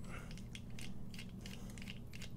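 Ratcheting bit screwdriver with a number 8 Torx bit clicking as it turns out a folding knife's handle screw: a quick, irregular run of faint ticks.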